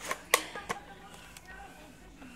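A few sharp clicks and knocks, the loudest about a third of a second in, with faint voices in between.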